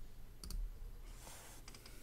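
Faint clicks at a computer: a sharp double click about half a second in and a few quick light clicks near the end, with a brief rustle between them over a steady low hum.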